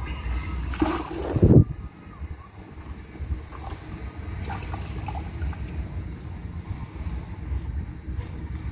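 Wet string mop being worked in a plastic bucket of water, with a short, loud splash about a second in, then the mop swishing over a wet concrete floor over a low steady rumble.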